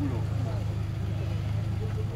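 Car engine running steadily at low revs: a deep, even hum as a car creeps slowly across a car park.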